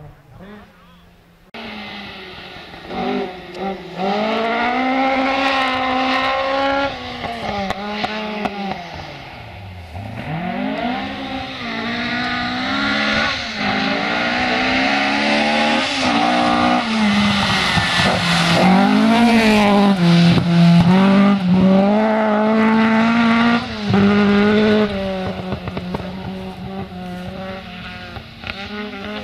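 Ford Escort Mk1 rally car's engine revving hard on a gravel stage, its pitch climbing and dropping with each gear change and lift. It is loudest as the car comes closest, then eases off near the end.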